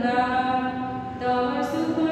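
A woman singing solo without accompaniment, in slow, long held notes, with a brief hissed consonant near the end.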